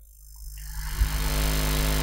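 Steady electrical mains hum in the sound system, rising in about half a second in and then holding at an even level.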